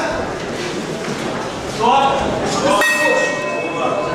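A ring bell struck once about three seconds in and left ringing with a steady tone, signalling the end of the fight, over shouting voices.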